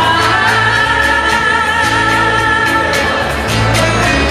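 A woman singing a long held note into a microphone over amplified backing music with a steady bass. Near the end the voice drops away and the accompaniment carries on.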